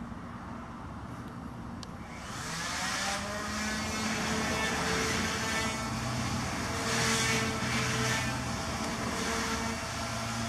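A motor engine running, growing louder from about two seconds in and then swelling and easing in waves.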